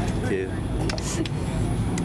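Steady low rumble of open-air ambience, with a few faint small clicks about a second in and again near the end.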